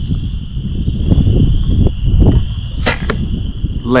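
A youth compound bow is shot about three seconds in: a sharp string snap with a second click just after as the arrow leaves.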